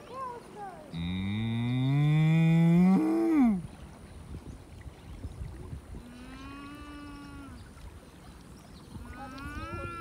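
A cow mooing. About a second in comes one long, loud moo that rises in pitch and drops off at the end. Two shorter, quieter moos follow later.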